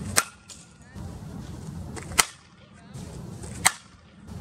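Fastpitch softball bat striking tossed softballs: three sharp cracks about a second and a half to two seconds apart, one swing per toss.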